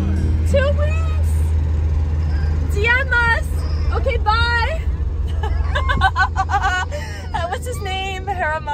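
Steady low rumble of a moving car heard from inside the cabin, with voices calling out in a few short cries that slide up and down in pitch.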